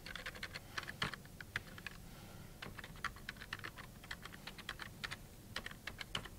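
Typing on a computer keyboard: quick, irregular keystrokes in short runs with brief pauses, as a user name and password are entered into a login form.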